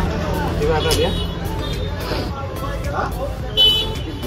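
Shop-floor background: faint voices over a steady low hum of street traffic, with one short, shrill toot near the end.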